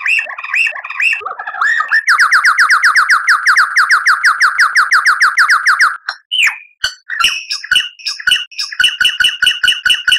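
A songbird singing a rapid, varied song: a few quick chirps, then a long, even trill of falling notes at about ten a second for some four seconds, then a string of sharp, fast repeated two-pitched notes.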